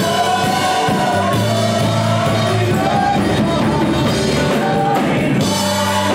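Live gospel worship singing: a lead singer and a group of backing vocalists sing over instrumental accompaniment with held low bass notes that change every second or two.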